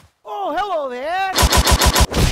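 A single wavering, sliding vocal note, then, in the last half second, a rapid burst of automatic gunfire at about ten shots a second.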